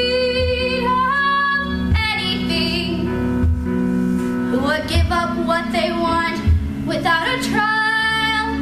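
A girl singing solo with vibrato over instrumental accompaniment that carries a soft low beat. She holds a long note, breaks off briefly about three to four seconds in, then starts a new phrase.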